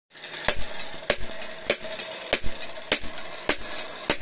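Hand hammer forging a sickle blade on a small iron stake anvil: a steady rhythm of about three blows a second, a heavier strike alternating with a lighter one, each with a short metallic ring.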